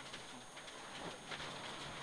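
Faint, muffled in-car running noise of a Mitsubishi Lancer Evolution IX rally car's turbocharged four-cylinder engine driving on gravel, with scattered light ticks from loose stones.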